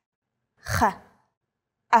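A woman pronouncing isolated Hebrew guttural sounds: a breathy throat 'ḥ' for the letter ḥet, then the start of the 'a' sound of ayin near the end.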